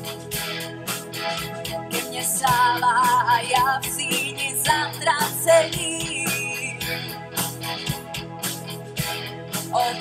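Live band playing the instrumental intro of a pop-rock song through a PA, with guitar and a drum kit keeping a steady beat under a lead melody. A singer comes in right at the end.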